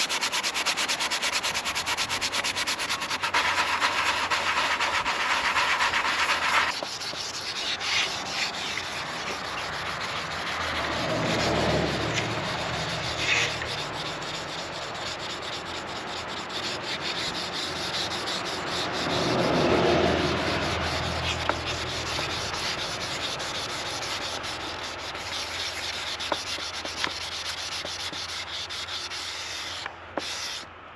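Sandpaper rubbed by hand back and forth over a cured gel coat patch on a fiberglass boat, a continuous scratchy sanding that is harsher for the first six seconds or so, then lighter. This is the fairing stage of the repair, smoothing the filled patch flush with the surrounding gel coat.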